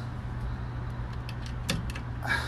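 A steady low machine hum, with a couple of small sharp clicks near the end as alligator jumper clips are fastened onto the furnace control board's thermostat terminals.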